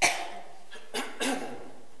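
A man clearing his throat sharply into a microphone: a sudden harsh burst that settles into a short voiced sound, followed about a second later by a brief word.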